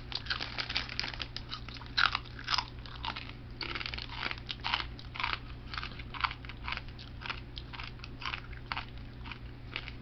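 A man chewing crunchy snack food tipped into his mouth from a bag, with quick, irregular crunches throughout and one louder crunch about two seconds in.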